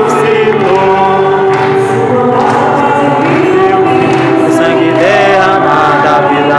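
A group of voices singing a hymn together, with long held notes.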